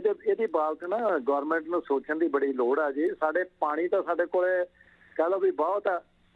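Speech only: a man talking over a telephone line, with a short pause about five seconds in.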